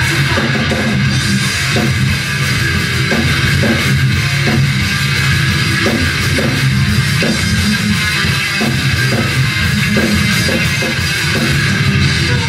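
Live rock band playing: electric guitars, bass guitar and a drum kit, with steady, regular drum hits.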